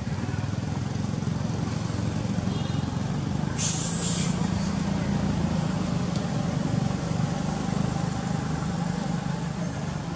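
Low, steady motor-vehicle engine rumble that swells in the middle and eases off again. A short hiss comes about three and a half seconds in.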